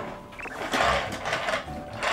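Plastic toys rattling and clattering in a busy run of knocks, with background music underneath.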